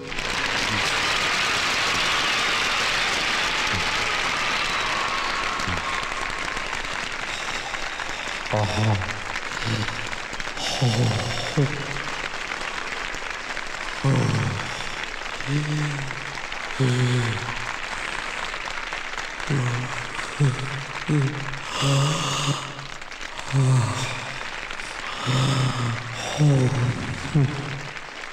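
A crowd cheering and clapping, loudest at first and then thinning. From about eight seconds in comes a man's heavy, voiced gasping for breath, one short falling gasp every second or two, as from exhaustion.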